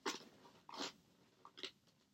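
Quiet, short crinkling rustles of things being handled and searched through by hand: three or four brief scrunches, about half a second apart.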